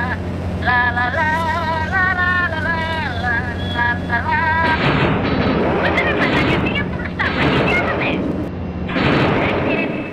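Warbling, wavering tones over a steady low hum. About halfway through they give way to a harsh noisy rumble with crackles, which stops a second before the end.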